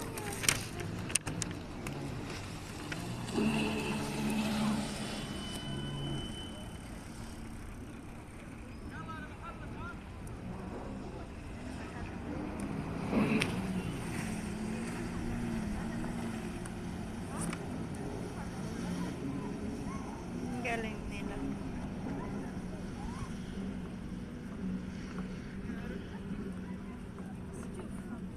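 Voices talking, unclear and not close, over a steady outdoor background hum, with a couple of sharp clicks in the first second or so.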